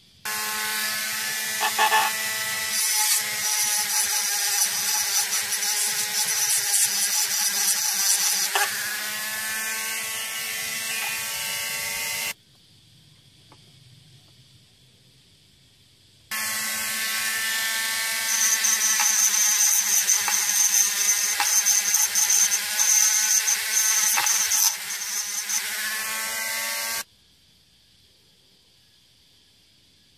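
Small handheld electric tool running in two long spells, each ending abruptly, with a steady motor whine. It is cleaning white corrosion off the brass terminals of a 1977 Chevrolet 454 distributor cap.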